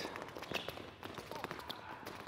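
Quick, light footfalls of sneakers tapping on an indoor hard court as players step rapidly through an agility ladder, heard as a run of faint, irregular taps.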